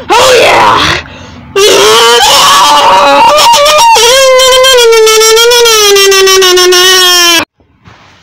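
A loud, distorted voice screaming in short phrases, then holding one long note that sags slightly in pitch and cuts off suddenly about a second before the end.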